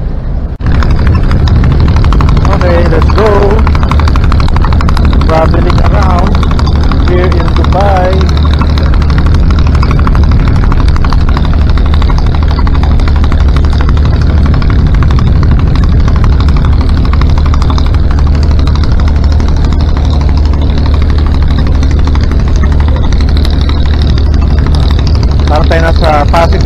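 An abra water taxi's engine running steadily under way, a loud low drone mixed with rushing water and wind noise.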